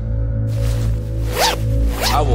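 A sports duffel bag's zipper being pulled, starting about half a second in, over a steady low drone of background music.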